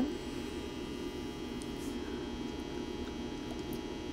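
A steady low hum of background noise with no clear events in it.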